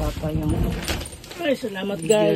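A plastic sack of rice rustling as it is lifted and tipped into a plastic bin, with grains beginning to rattle in, over people talking.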